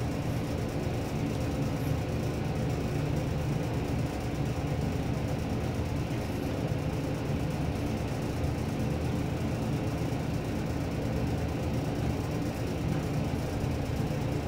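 Haughton traction elevator car travelling downward, a steady low hum and rumble of the ride heard from inside the car, even in level from start to end of the run.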